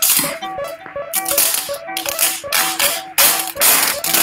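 Improvised electronic music jam: a repeating pattern of short synth notes, about four a second, with loud bursts of rattling, crackling noise cutting in several times, the longest near the end.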